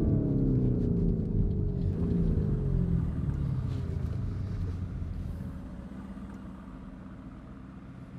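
Lamborghini Urus twin-turbo V8, heard from inside the cabin, its note falling steadily in pitch over about four seconds as the SUV slows after a full-throttle run. It then fades to a low, steady rumble.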